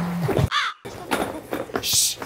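Strained, raspy cries and grunts from people scuffling, with scattered knocks and rustling. A steady buzz cuts off just after the start, and a short burst of hiss comes near the end.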